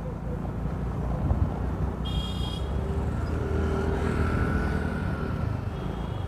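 Road and wind noise with a steady low rumble as a motorcycle with a dead engine rolls along, pushed up to speed by a scooter for a push-start. A brief high-pitched tone sounds about two seconds in.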